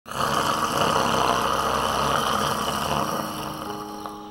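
A man's loud snore, coarse and engine-like, starting abruptly and fading over the last second as a few soft music notes come in.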